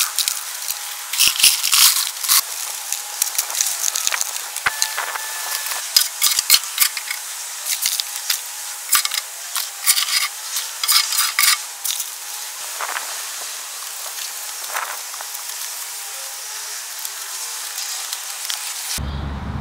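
Gravel and a shovel crackling and scraping as loose material is poured into a post hole and shovelled. There is a dense run of small clicks through most of the first twelve seconds, which then thins to a softer hiss.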